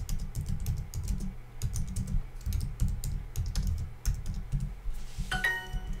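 Typing on a computer keyboard in quick, irregular keystrokes. About five seconds in, a short chime of several steady tones sounds: the app's correct-answer signal.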